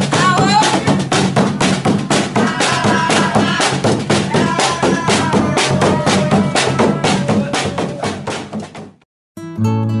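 Large marching drum beaten in a fast, steady rhythm with a group chanting along, as in a Ramadan sahur wake-up procession; the sound fades out about nine seconds in.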